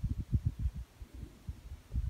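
Wind buffeting a camera microphone outdoors, heard as irregular low rumbling thumps.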